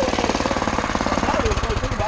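Small single-cylinder engine idling close by: a steady, rapid putter.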